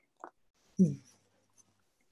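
A single short "mm" from a voice, falling in pitch, about a second in, with a brief soft noise just before it; otherwise quiet room tone.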